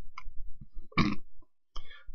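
A man's mouth and throat noises close to the microphone between phrases: a low, burp-like throat sound, then a short breathy hiss about a second in.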